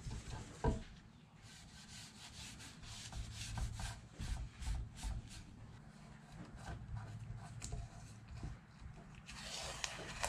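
Rubbing and handling on a stained wooden board, then green painter's tape (FrogTape) being peeled off the wood in a faint run of small crackling ticks, with a longer, louder peel near the end.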